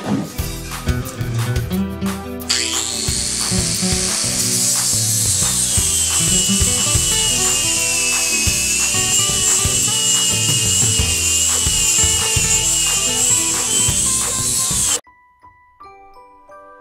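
Four-inch angle grinder with a flap disc grinding leftover bracket weld off a steel Jeep frame: a loud high-pitched whine starts a couple of seconds in, sinks in pitch as the disc is pressed into the metal, and climbs again near the end before cutting off suddenly. Music with a drum beat plays under it.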